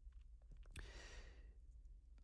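Near silence, with one faint breath drawn by the speaker between phrases, about half a second in and lasting about a second, and a small click in the middle of it.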